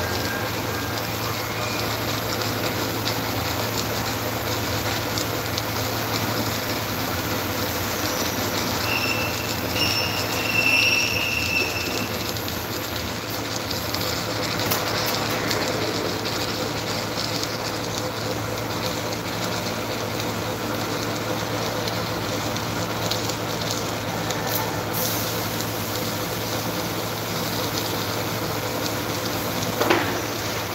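Submerged arc welding tractor working a seam: a steady machine hum with an even hiss throughout, and a brief high-pitched squeal about nine to twelve seconds in.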